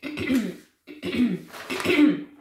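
A woman coughing three times in quick succession.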